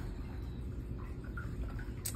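Steady low room rumble with a few faint, light clicks, typical of a phone being moved around by hand while it records.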